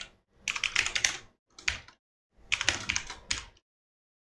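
Typing on a computer keyboard: quick runs of key clicks in three short bursts, with silent pauses between them.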